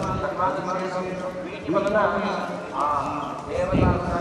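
People talking nearby, their voices coming and going in short phrases.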